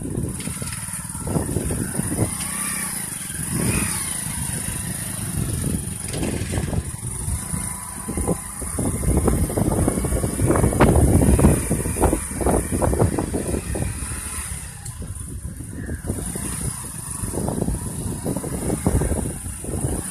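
Wind buffeting the phone's microphone in uneven gusts, a rough rumbling noise that swells and drops, loudest a little past the middle.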